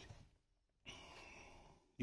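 Near silence: room tone, with a faint breath lasting about a second in the middle.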